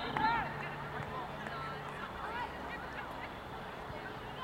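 Birds honking repeatedly: a quick run of short calls at the start, then scattered, fainter calls.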